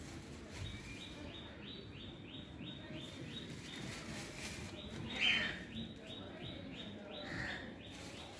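A bird calling in quick series of short rising notes, about four a second, in two runs with a pause between them. Two louder single calls come in the second half.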